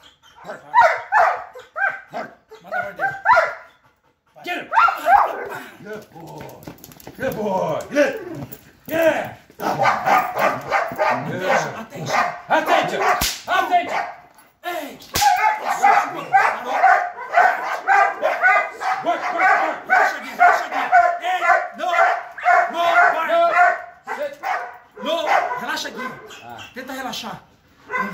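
Belgian Malinois barking repeatedly: a few scattered barks, then a long, fast, unbroken string of barks through most of the second half.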